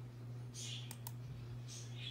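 Two faint computer mouse clicks in quick succession about a second in, over a steady low hum.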